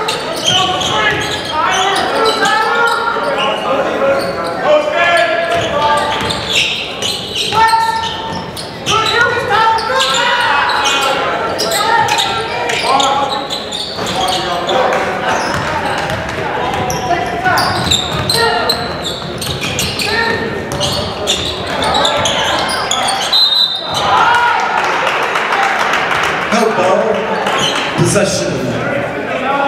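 A basketball bouncing on a hardwood court during play, among the voices of players, coaches and spectators in an echoing gymnasium.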